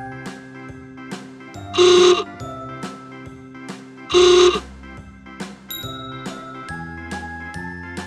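Upbeat children's background music with a steady beat. Two short, loud pitched blasts sound over it, about two seconds in and again about four seconds in.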